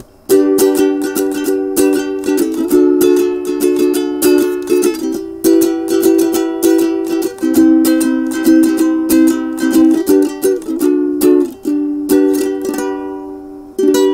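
IRIN walnut-wood ukulele, freshly tuned, strummed by hand in a steady rhythm through a run of chords that change every couple of seconds. The strumming briefly lets up near the end before starting again.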